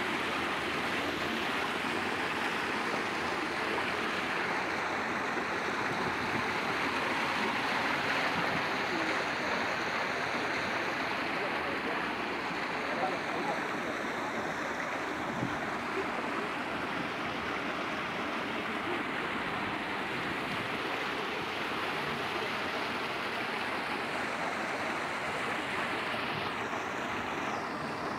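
Waterfall pouring over rocks close to the microphone: a steady rush and splash of falling water.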